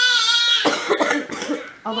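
A high-pitched vocal squeal lasting under a second, followed by a few short coughs.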